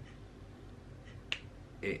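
A single sharp click about a second and a half in, in an otherwise quiet pause.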